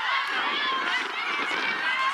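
Several voices of spectators and players calling out and chatting over one another, with no words clear.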